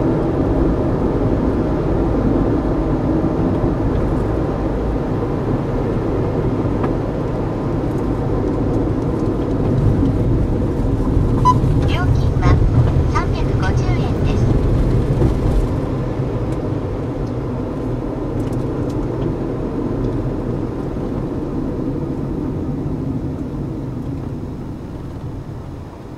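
Road and engine noise heard inside a moving car: a steady low rumble that swells a little about halfway through and fades near the end as the car slows to a stop. Around the middle a short beep and a few brief sharper sounds cut through.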